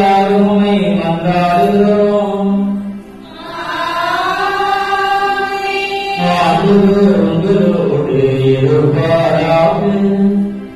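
Liturgical chant: a man's voice intoning in long, held notes, broken by a short pause about three seconds in and a higher passage that rises and falls before the lower chant returns.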